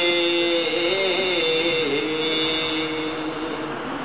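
A man reciting a naat unaccompanied, holding one long sung note at the end of a line. The note bends slowly and steps down about halfway, fading a little toward the end.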